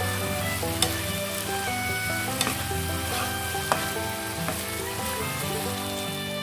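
Chicken in a thick coconut-milk sauce sizzling in a nonstick wok while a spatula stirs it, with a few sharp clicks of the spatula against the pan. Background music plays underneath.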